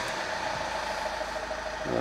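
Vauxhall Zafira B's 1.9 four-cylinder turbodiesel (Z19DTH) idling steadily, heard from inside the cabin.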